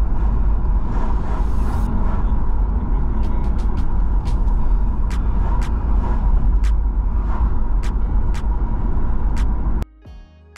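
Road noise from inside a moving vehicle at highway speed: a steady, heavy rumble of engine, tyres and wind, with scattered sharp clicks in the second half. It cuts off suddenly just before the end.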